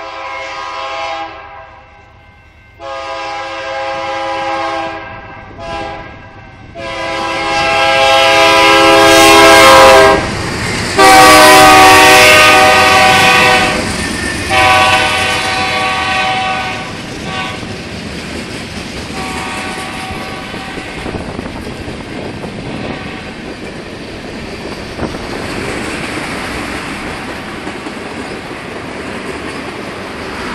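A BNSF freight locomotive's air horn sounds its chord in a series of blasts, mostly long with one short, as the train comes up, loudest around ten to fourteen seconds in. After that the train rolls past in a steady rumble, with the wheels clattering over the rail joints.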